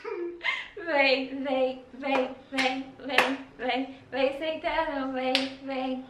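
A woman chanting "vem" over and over on one steady note, about three syllables a second, as a dance count, with a few sharp hand claps mixed in.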